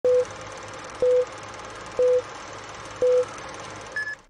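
Film-leader countdown sound effect: four short, identical mid-pitched beeps, one each second, over a steady noise bed with a low hum.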